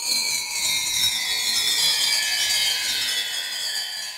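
A hissing, high-pitched transition sound effect with a few thin tones that slowly fall in pitch, fading out near the end. It marks the break between two chapters of a narrated story.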